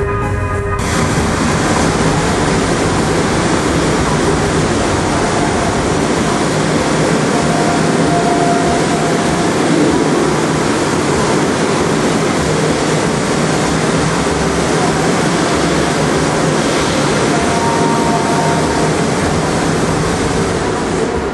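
Loud music from a large dance sound system, heard as a dense, distorted wash with little clear tune, as from an overloaded camera microphone; it sets in about a second in and holds steady.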